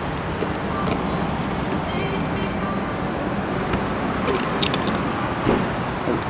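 A key being worked in the Lotus Elise's locking fuel filler cap: scattered sharp metallic clicks as the key and cap are fiddled with, over a steady background of road traffic.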